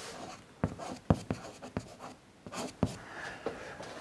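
Chalk writing on a blackboard: a few sharp taps and short scratching strokes as a word is chalked.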